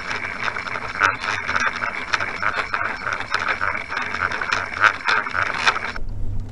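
Underwater sound of a musky crankbait being trolled: a rapid, rhythmic rattling and clicking over rushing water. It stops just before the end.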